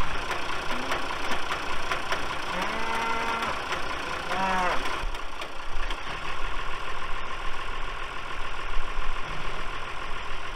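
Cockshutt farm tractor engine running steadily while it works its front loader, with cattle mooing twice near the middle: one long, level moo and then a shorter one that bends in pitch.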